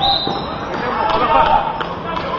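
Youth basketball game on an outdoor concrete court: voices calling and shouting over a basketball bouncing, with a couple of sharp bounces. A brief high squeal comes right at the start.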